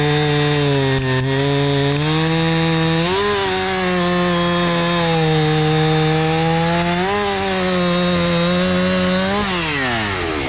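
Stihl gas chainsaw at full throttle cutting through a cherry log, the engine running steadily under load. Its pitch steps up briefly about three seconds in and again about seven seconds in, then falls away as the throttle is released near the end.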